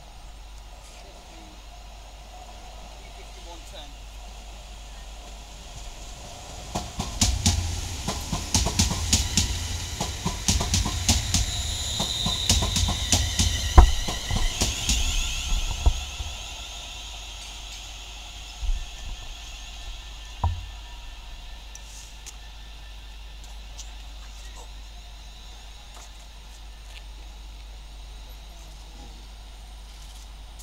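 Class 350 Desiro electric multiple unit running past close by: a rumble with rapid clicking of wheels over rail joints, and a high squeal midway through, dying away after about ten seconds. Two single thumps follow a few seconds later.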